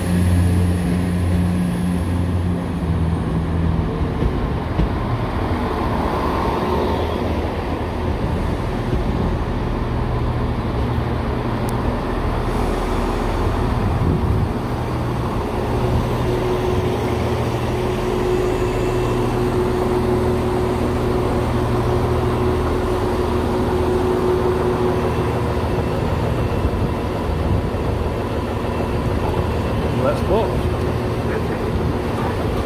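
Class 170 Turbostar diesel multiple unit pulling into the platform, its diesel engines running with a steady hum that drops in pitch about four seconds in.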